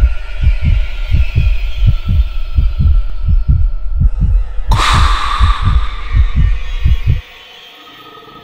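Horror-style intro sound design: a fast, heavy heartbeat-like low thumping, about three beats a second, under a thin held eerie tone, with a noisy whoosh about five seconds in. It cuts off abruptly about seven seconds in, leaving a quiet lingering tone.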